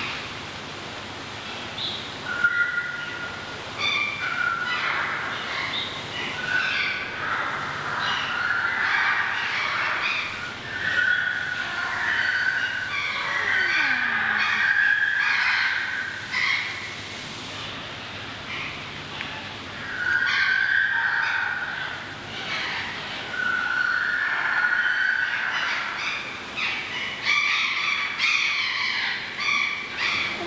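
Bird-like whistled calls repeating: held notes of up to about a second, mixed with shorter chirps, over a faint steady hum.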